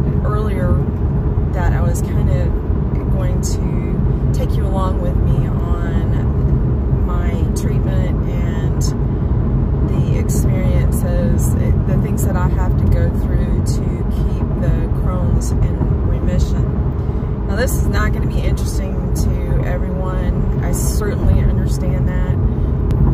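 A woman talking inside a car cabin over the steady low rumble of the car's road and engine noise.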